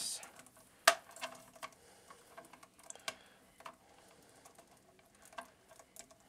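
Small plastic clicks and taps as the face parts of a Snail Shell GN-001 Wolf Armor action figure's head are handled and swapped. One sharp click about a second in, then scattered lighter clicks.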